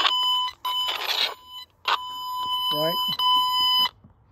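Fluke Networks Pro 3000 tone probe sounding a steady high beep-like tone that cuts out briefly several times as its tip is run along the wire: the probe is still picking up the toner's signal on the traced wire.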